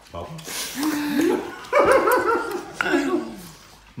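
Garbled, muffled voices of people trying to talk through mouthfuls of oversized bubblegum, rising and falling in pitch, with a louder, higher wavering stretch about halfway through.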